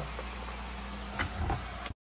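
Onions and freshly added carrots sizzling in a pot on the stove over a steady low hum, with two light clicks a little after a second in; the sound cuts off abruptly just before the end.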